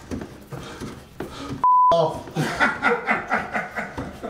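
A censor bleep: one short steady beep a little before halfway, with all other sound muted under it, covering a word. Men chuckling and laughing follow it.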